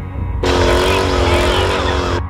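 Ferrari engine held at high revs with tyres squealing in a smoky burnout. It cuts in suddenly about half a second in, over background music with a low pulse.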